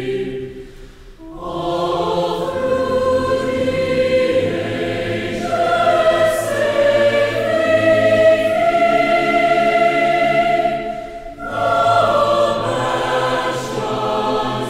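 Slow choral music: a choir singing long held chords, with short breaks between phrases about a second in and again near the end.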